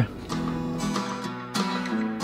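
Background music: an acoustic guitar strumming chords.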